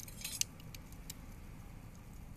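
Glowing wood embers in a Fujimi Flame Stove L secondary-combustion wood stove crackling. A quick cluster of sharp crackles comes a quarter second in, then two single ticks, over a low steady hiss.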